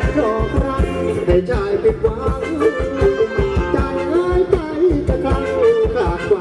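Live Thai ramwong band music: a singer and a melody line over a quick, steady drumbeat.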